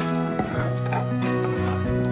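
Background music with sustained notes that change pitch.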